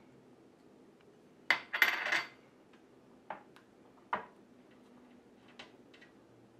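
A spoon clinking and scraping against a small glass bowl while stirring a thin sauce. There is a quick run of loud clinks about one and a half seconds in, then a few single taps spread through the rest.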